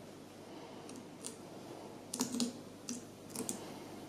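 Light, scattered clicks and taps of small parts being handled at a fly-tying vise, mostly in the second half, with a cluster of them a little over two seconds in.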